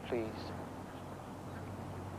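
A man's voice says one word, falling in pitch, then only a low steady hum and faint background noise.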